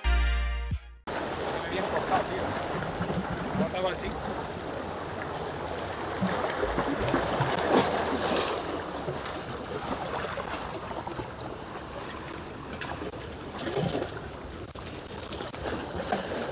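Sea water washing and splashing against concrete breakwater blocks, a steady rushing wash. A snatch of music cuts off about a second in.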